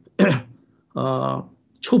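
A man speaking in two short phrases with pauses between them, then resuming near the end.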